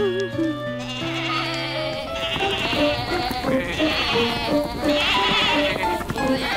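A flock of sheep bleating, many overlapping calls starting about a second or two in and continuing, over a light background music score.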